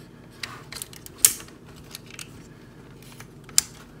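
Plastic clicks and snaps as the panels of a B2FIVE Acid Rain Stronghold mech toy are flipped up and handled, with two sharper snaps, one just over a second in and one near the end.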